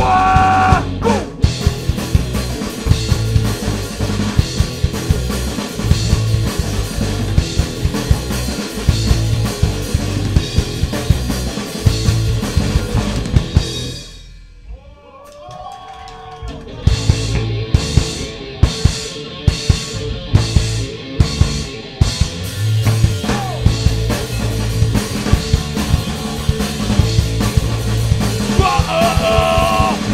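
Hardcore punk band playing loud and fast live, with pounding drums and distorted guitars and bass. About halfway through the music drops off for a couple of seconds, leaving a few sliding tones. It then restarts with evenly spaced drum hits before the full band comes back in, and shouted singing starts near the end.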